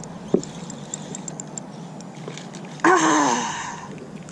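A woman's drawn-out groan, falling in pitch and lasting about a second near the end: a sound of disappointment at a hooked fish lost. Before it come faint quick ticking and a single light click.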